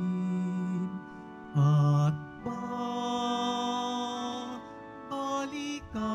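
A slow communion hymn: a singer holds long notes, some with a wavering vibrato, over steady sustained accompaniment, the phrases parted by short breaths.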